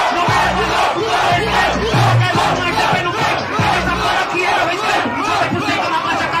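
Rap-battle crowd yelling and cheering together. A deep bass beat pulses under the crowd and stops about four seconds in.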